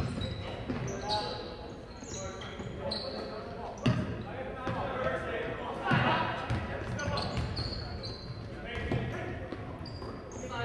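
Live basketball in a gym: a basketball bouncing on the hardwood court, short high sneaker squeaks, and players' and spectators' voices echoing in the hall, with sharp thuds about four and six seconds in.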